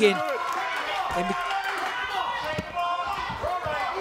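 Shouted voices from around the cage over a few dull thuds of two fighters grappling and striking on the canvas mat.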